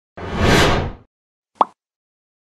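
Animated logo sound effects: a whoosh that swells and fades over about a second, then a single short pop about one and a half seconds in.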